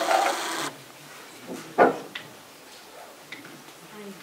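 Handling noise as a telephone handset is picked up from a wooden table: a brief rustling scrape at the start, then a sharp knock just under two seconds in and a few faint clicks.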